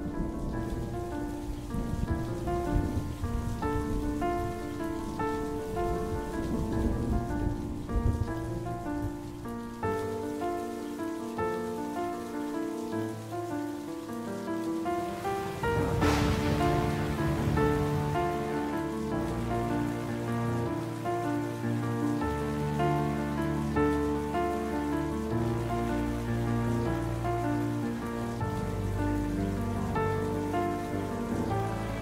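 Steady rain with music of slow, held notes over it, and a single loud thunder crack about halfway through, after which deep bass notes come in.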